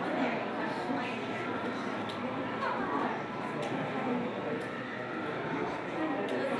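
Indistinct voices of people talking in a large, echoing indoor hall, with no clear words.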